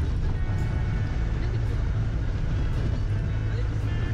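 Steady low rumble of a Tata Sumo's engine and tyres on a rough gravel track, heard from inside the cabin.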